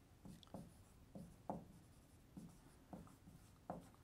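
Marker writing on a whiteboard: faint, short strokes of the tip across the board, about seven of them spaced irregularly.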